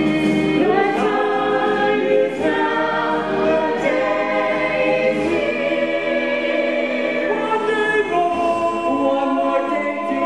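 A stage cast singing together in chorus, many voices holding sustained notes.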